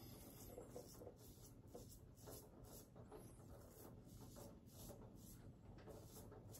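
Safety razor scraping stubble on the neck in short, faint, scratchy strokes.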